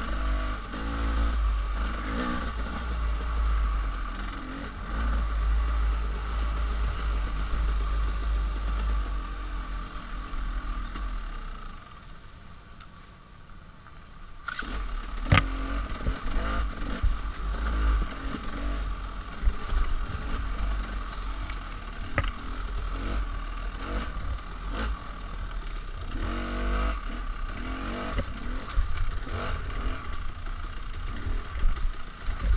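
Dirt bike engine running and revving along a rough trail. About twelve seconds in it eases down to a low, quieter run for a couple of seconds, then picks up again. Two sharp knocks come partway through.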